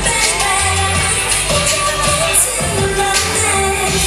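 A K-pop song with female singing over a steady beat, played loudly over a hall's sound system.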